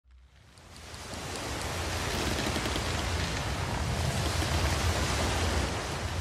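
Steady rushing of wind and sea water. It fades in from near silence over the first two seconds and carries a low rumble underneath.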